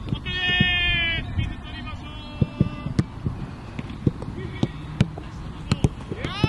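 A long, loud held shout near the start, then a shorter call, over sharp thuds of footballs being kicked on a training pitch throughout.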